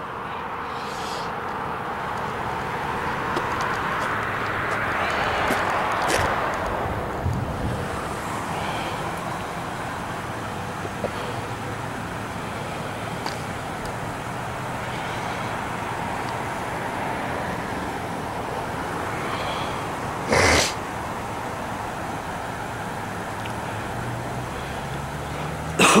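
Roadside traffic noise: a steady hum that swells as a vehicle passes a few seconds in. A short loud burst comes about twenty seconds in, an engine note rises near the end, and a cough closes it.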